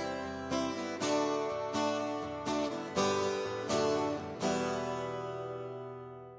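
Closing music: chords struck on a plucked string instrument every half second or so, the last one about four and a half seconds in left to ring out and fade away.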